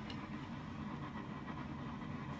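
Steady low rumble of a running forge, even in level, with no distinct clicks or knocks.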